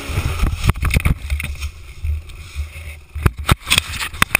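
Dirt bike engine running with a rough low rumble and wind noise on the camera microphone, broken by a cluster of sharp knocks and clicks about half a second in and a series of louder knocks in the last second, as the camera is jostled near the ground.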